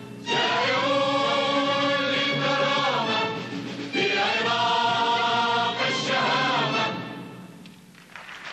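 Large mixed choir of men and women singing two long phrases, each rising into a held chord, with the last phrase fading away near the end.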